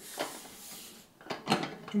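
A stainless steel stovetop kettle being gripped by an electric prosthetic finger hand: a few light knocks and clinks of the handle, the clearest two close together about a second and a half in.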